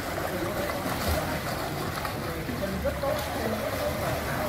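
Children kicking and splashing in a swimming pool, a steady wash of water noise, with faint voices behind it.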